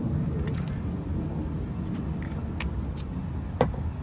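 Steady low outdoor background rumble, with a few short clicks or knocks; the sharpest comes a little after three and a half seconds in.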